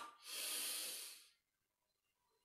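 A man's single long audible breath, lasting about a second, taken as he sweeps his arms overhead in a yoga lunge.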